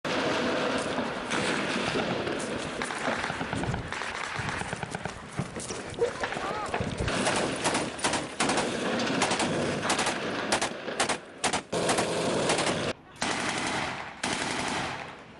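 Small-arms gunfire in repeated rapid bursts, many shots close together, with a brief break near the end.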